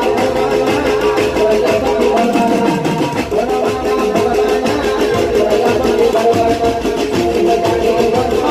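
Live Gujarati garba music from a stage band of keyboard, dhol and drums: an instrumental passage, a melody of held notes over a steady beat.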